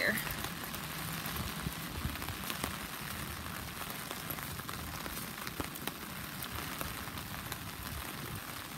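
Heavy rain pouring steadily onto the surface of a flooded pond, a dense, even patter with scattered sharper drop ticks.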